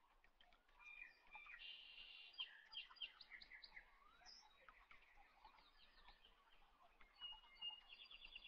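Faint birds chirping in the background, with repeated short trilled notes and a few light clicks.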